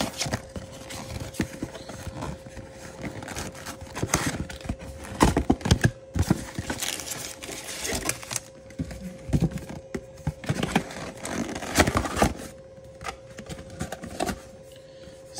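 Cardboard Topps Chrome monster box being torn open and its foil card packs tipped out onto a stone countertop: irregular tearing, crinkling and scraping with light knocks, loudest in two bursts about five and eleven seconds in.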